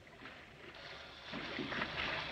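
A movie camera whirring as it films, over water sloshing and splashing around a swimmer. The sound grows louder about a second and a half in.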